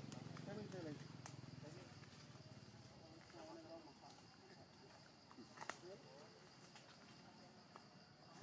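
Faint, short squeaky calls a few seconds apart, rising and falling in pitch, from a baby long-tailed macaque whimpering at its mother, with an occasional sharp click.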